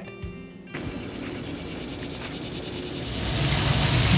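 A car approaching on the road outside, its engine and tyres growing louder from about three seconds in, after the tail of background music cuts off near the start.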